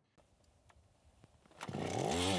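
Near silence, then about one and a half seconds in a powered ice auger's motor comes in, running steadily as it drills into sea ice.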